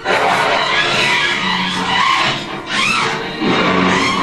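Horror film trailer soundtrack: dramatic music with sound effects, opening with a sudden loud crash and carrying a brief rising-and-falling cry about three seconds in.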